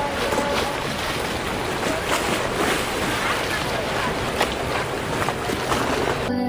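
Choppy lagoon water splashing against the stone quay, with wind on the microphone and background crowd chatter, broken by a few short clicks.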